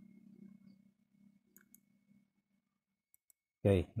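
A few faint computer keyboard key clicks in two pairs as text is typed, in an otherwise quiet room.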